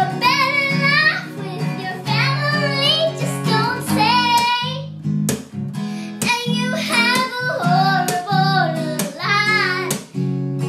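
A young girl singing over a strummed acoustic guitar, her voice wavering in pitch, with a short break near the middle.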